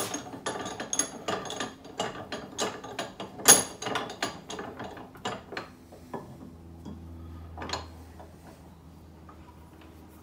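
A cast-iron bench vise being worked to press a rubber suspension bush: a run of irregular metallic clicks and clanks, several a second, with one louder clank about three and a half seconds in. The clicking thins out after about six seconds, and a low hum continues.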